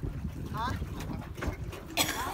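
Wind rumbling on the microphone, with a short snatch of a distant voice about half a second in.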